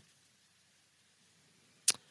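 Near silence, broken once near the end by a single short, sharp mouth or breath noise right at the microphone.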